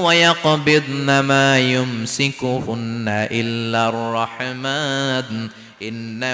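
A man's voice chanting melodically in a sermon style, holding long notes with gliding pitch, with a brief pause near the end.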